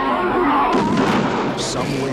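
Rifle gunfire mixed with a wild boar's wavering, high squeal.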